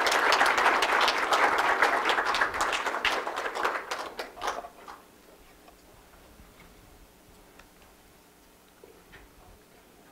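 An audience applauding in a conference room. The clapping fades out about four to five seconds in, leaving quiet room tone.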